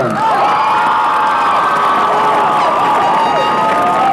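Stadium crowd cheering, with many high voices whooping and yelling over the steady noise of the crowd.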